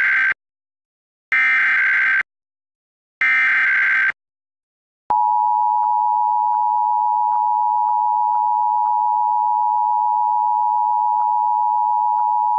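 Emergency Alert System test signal: the SAME header, three harsh bursts of digital data tones about a second long and about a second apart (the first already under way at the start), then about five seconds in the steady two-tone EAS attention signal, which holds loud and unchanging.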